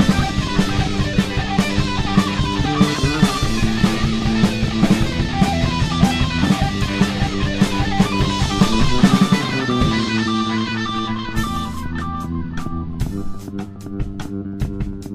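Indie rock band playing an instrumental passage: electric guitar, bass guitar and drum kit. About ten seconds in, the bass and full drums drop away, leaving guitar notes over a thin run of sharp, regular ticks, about three a second.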